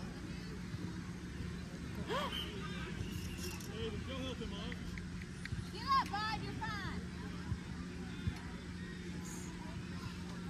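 Scattered shouts and calls from players and spectators across an open field, over a steady low hum. The loudest is a high, brief shout about six seconds in.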